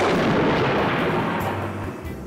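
A loud blast sound effect, like an explosion, dying away over about two seconds, with background music under it.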